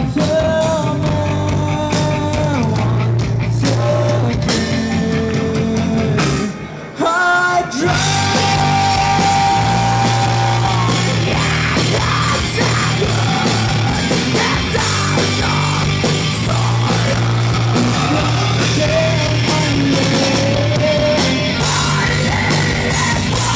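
Heavy rock band playing loud through a club PA, with drums, distorted guitars and bass under a singer's held, sung notes. The music drops out briefly about seven seconds in, then the full band comes back in.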